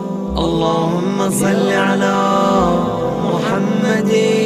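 A male voice chants an Arabic du'a melodically, gliding between held notes, over a steady low drone. The line is a prayer of blessing on Muhammad and his family.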